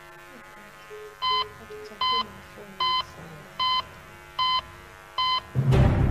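Six short electronic beeps about 0.8 s apart, like a heart monitor's pulse beep at a resting heart rate, over a faint steady electrical hum. Theme music comes in loudly just before the end.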